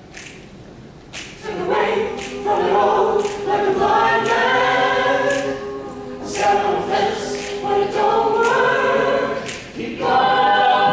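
Mixed-voice a cappella group singing a song with a male lead voice over sustained backing chords, with sharp percussive hits roughly once a second. It starts quietly and the full chords come in about a second and a half in.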